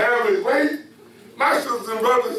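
Speech only: a man preaching a sermon, in two short phrases with a brief pause between.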